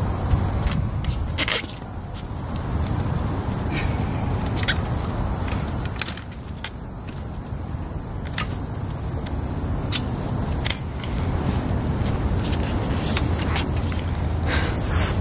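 Breaker bar and socket on a car wheel's lug nuts as they are broken loose: scattered short metallic clicks and knocks over a steady low outdoor rumble.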